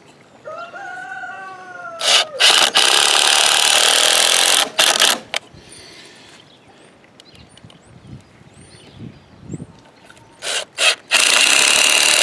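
Cordless drill driving screws into wood, in two runs: one of about three seconds starting about two seconds in, and another starting near the end.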